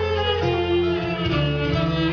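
Kasidah band playing an instrumental passage: a sustained, violin-like melody over plucked strings and a steady bass.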